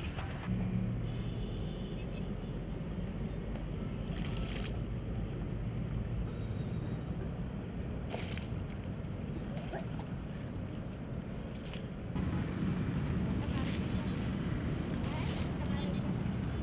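Outdoor background rumble, like wind on the microphone, getting louder about three quarters of the way through, with a few brief sharper noises.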